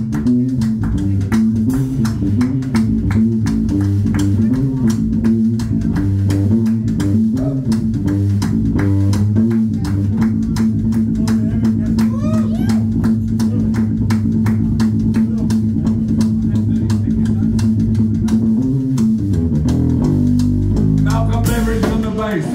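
Live blues-rock band playing: Stratocaster-style electric guitar, electric bass and a drum kit keeping a steady, fast beat. A long held note runs through the middle, and the playing changes near the end.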